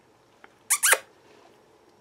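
A dog gives a brief high-pitched whine, two quick squeaks close together a little under a second in, with a faint click just before.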